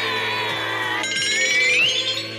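Anime soundtrack: a long held, pitched tone that sinks slightly, then glides upward with a fast flutter over the second half, over steady background music.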